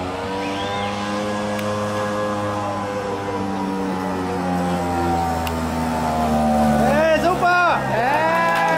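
Vintage Vespa scooter's small two-stroke engine running hard under load as it climbs a steep ramp, its pitch sagging slowly. Near the end, people shout and cheer.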